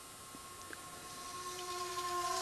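Faint, steady whine of the E-flite UMX Ultrix micro RC plane's electric motor and propeller in flight, growing louder toward the end as it comes closer, over a background hiss.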